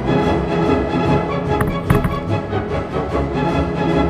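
Background music with layered pitched instruments playing steadily, and two short clicks a little before two seconds in.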